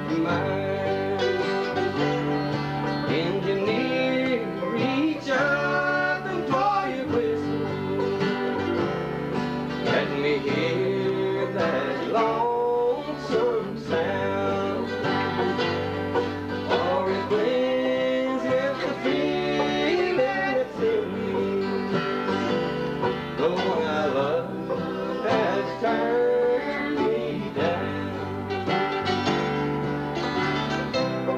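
Bluegrass-style string music: picked banjo and guitar playing over a steady bass beat, with a sliding melody line.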